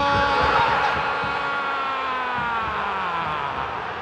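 A TV football commentator's long goal cry, one held note that slowly falls in pitch and fades after about three and a half seconds, over crowd noise.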